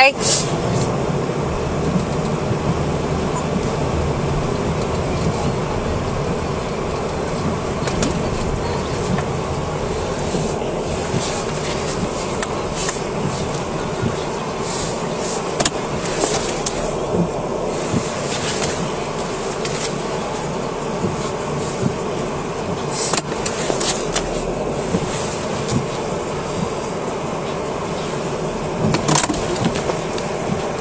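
Steady in-cabin noise of a police patrol car driving through falling snow: a continuous hum of engine, road and heater blower, with occasional short rustles.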